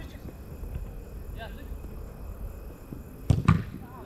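Football being struck on an artificial pitch: two sharp thuds about a fifth of a second apart, about three seconds in, over a steady low rumble, with a faint distant shout earlier.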